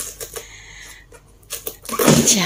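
Irregular light clicks and taps, about a dozen short ticks spread through the two seconds, from hands working at the plastic body of an air fryer.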